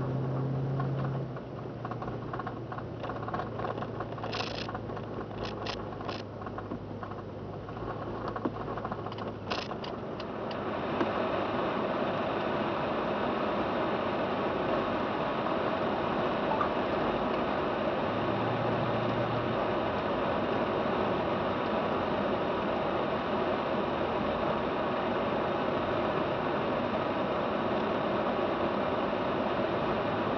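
A car driving on a snow-packed road, heard from inside the cabin: a low engine hum under steady tyre and road noise. The noise rises about ten seconds in and then holds steady and louder, with a few faint clicks in the quieter first part.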